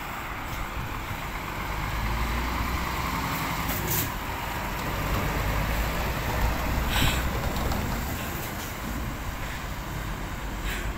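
Scania tipper truck's diesel engine and tyres going past close by and pulling away, the low rumble swelling to its loudest as the truck passes. A brief hiss of air comes about seven seconds in.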